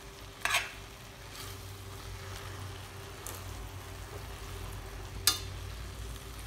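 Spaghetti being tossed and stirred with metal utensils in a stainless steel pan over a low sizzle, with a few short scrapes and clinks of metal on the pan, the sharpest about half a second in and near the end.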